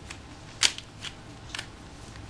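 Back cover of a Samsung TL220 compact camera being pried off by hand. There is one sharp click about half a second in, then a few fainter clicks as the cover works loose.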